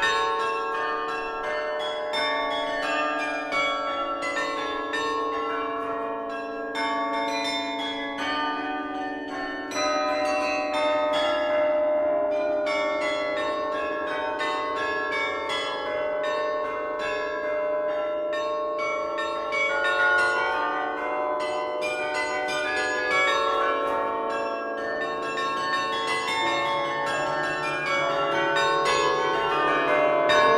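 Restored Hemony carillon played from its baton keyboard: quick, dense runs of struck bronze bells ringing over one another in a melody. Deeper bass bells join about 25 seconds in.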